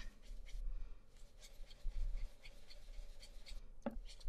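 Ink blending brush rubbed over a stencil on cardstock: soft, irregular scrubbing strokes.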